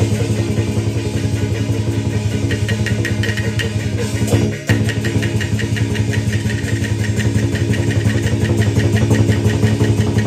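Xiangju opera stage music: the accompanying ensemble plays a fast, even percussion beat over a loud, sustained low instrumental drone, with a brief break about four and a half seconds in.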